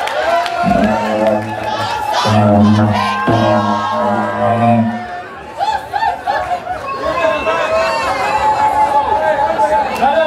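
Live stage music through a PA: deep held bass notes in the first half that stop about halfway, with crowd voices and shouting and a voice on the microphone throughout.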